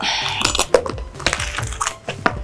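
A quick, irregular run of sharp clicks and taps over soft background music.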